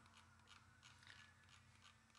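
Near silence: faint room tone in a pause between stretches of speech.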